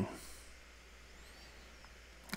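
Faint background hiss with a steady low hum from the recording, after the tail of a spoken word at the very start.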